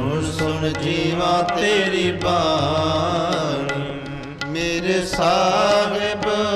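Shabad kirtan: male voices singing Gurbani in long, wavering melodic lines, accompanied by two harmoniums and tabla. The music dips briefly about four seconds in.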